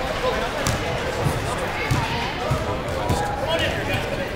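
A basketball bouncing on a hardwood gym floor: a string of dull thumps about every half second or so, like a steady dribble, under the chatter of voices.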